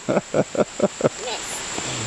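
Laughter, a quick run of about five short pulses in the first second, over the steady rush of a nearby creek.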